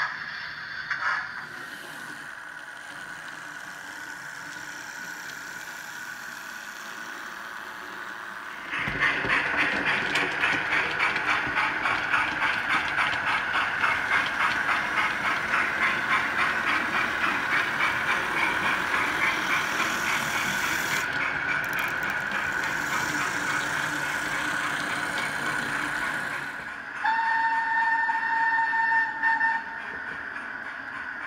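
Steam locomotive sound: a rhythmic beat of about two a second begins suddenly about nine seconds in and runs on, then a steady two-note steam whistle sounds for about two seconds near the end.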